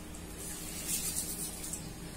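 Soaked whole black urad dal being rubbed between the hands in a glass bowl of water to wash it: a soft wet swishing and rustling of the lentils.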